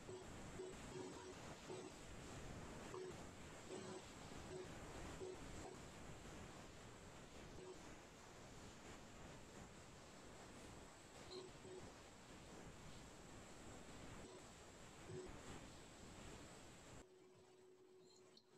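Near silence: faint room tone with a few brief, faint low tones.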